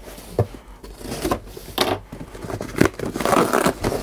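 Utility knife cutting through the packing tape on a cardboard box, a run of short scrapes and rips, then the cardboard flaps pulled open with a longer rasp near the end.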